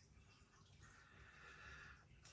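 Near silence, with a faint, steady sniff at a glass of dark beer held to the nose through the second half.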